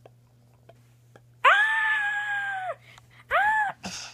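A person's voice screaming twice: one high-pitched scream held for over a second, then a shorter one that rises and falls. A few faint clicks come before them.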